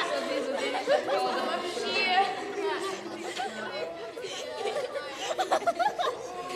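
A group of children's voices chattering over one another, with no single clear speaker.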